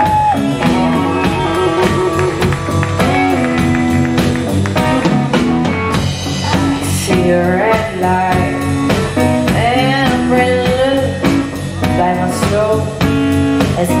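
Live blues band playing an instrumental passage: electric guitar lead with bent, gliding notes over bass guitar and drum kit.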